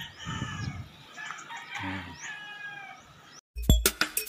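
Roosters crowing, several long crows overlapping. Near the end the sound drops out for a moment and music with a heavy beat starts.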